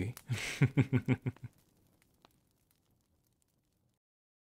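A man laughing: a quick run of short chuckles that ends about a second and a half in, followed by near silence broken by one faint click just after two seconds.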